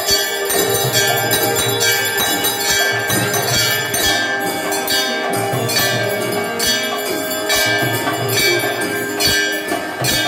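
Many large brass hand bells rung together without pause in temple worship, a dense clanging wash of ringing tones. Under it runs a regular beat of struck percussion, part of the sarva vadya, the sounding of all instruments at once.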